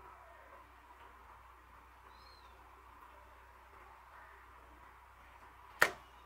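Quiet room tone with faint hiss, a faint short high chirp about two seconds in, and one sharp click near the end.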